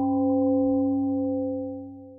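A struck bell tone ringing out, several steady pitches sounding together and slowly fading away near the end.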